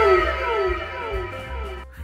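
A novelty 'wow' sound effect: a few overlapping held tones sliding down in pitch, cutting off near the end, over background music with a steady bass line.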